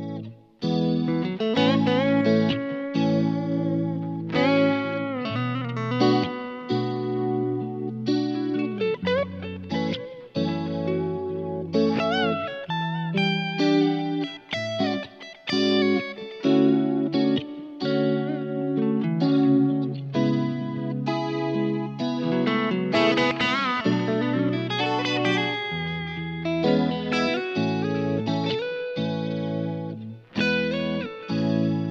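Electric guitar played through a DSM Humboldt Simplifier DLX amp emulator used in mono with one emulated amp, clean to lightly driven: sustained chords and melodic lines, with wavering, bent notes around 12 and 24 seconds in.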